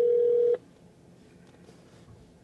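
A single steady telephone tone on a hands-free call, cutting off suddenly about half a second in, leaving a quiet open line while the call waits for a representative.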